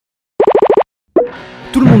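A quick run of about six cartoonish plop sound effects, each a short pop that bends in pitch, followed after a brief gap by background music starting; a voice begins near the end.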